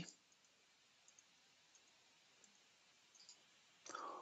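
Near silence with a couple of faint computer-mouse clicks, one about a second in and another a little past three seconds.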